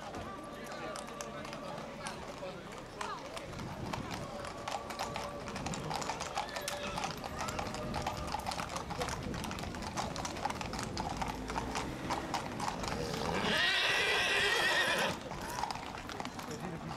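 Horses' hooves clip-clopping on a paved street, with crowd voices behind. Near the end a horse whinnies loudly for about two seconds.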